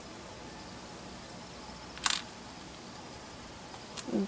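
Faint steady hiss of the recording, with one short sharp noise about two seconds in.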